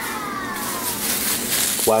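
Plastic bag crinkling as it is bunched up by hand over an oiled wooden cutting board, getting louder from about half a second in. A short falling squeaky whine comes in the first second.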